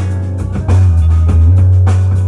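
A rock band playing live: electric guitars through amplifiers over a drum kit with cymbal hits, and loud low sustained notes underneath. No vocals.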